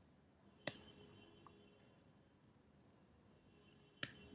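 Near silence: room tone, with one short click about two-thirds of a second in.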